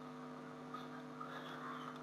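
Steady low electrical mains hum picked up by the recording, with a few faint clicks in the second half, matching the mouse clicking a dialog's scroll arrow.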